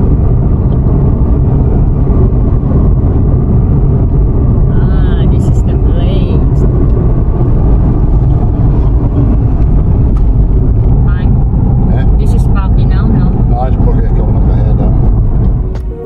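Steady low rumble of a car in motion heard from inside the cabin: road and engine noise.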